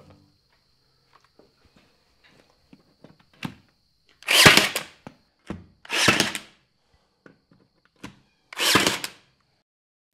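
Cordless battery brad nailer firing three times, driving two-inch brad nails through T1-11 pine plywood siding into the wall. Each shot is a short burst under a second long, with lighter clicks in between as the nose is set against the panel.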